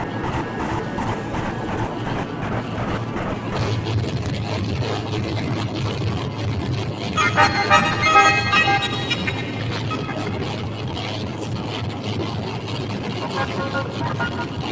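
Improvised experimental noise music from effects pedals and electric guitar: a dense, steady rumbling texture, with a brighter cluster of pitched tones for about two seconds starting about seven seconds in.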